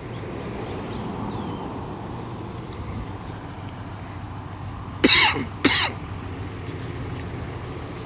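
A man coughing twice, about five seconds in, a dry cough that he puts down to allergies. The coughs stand out over a steady low hum of vehicle traffic.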